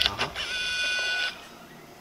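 Edited-in 'zoom' sound effect: a steady electronic whirr about a second long that cuts off suddenly.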